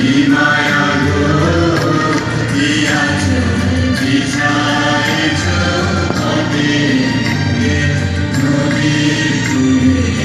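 Music with a group of voices singing, loud and steady throughout.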